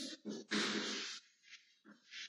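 Chalk scraping on a blackboard as words are written: a short stroke, then a longer scrape of about half a second, then a couple of brief ticks.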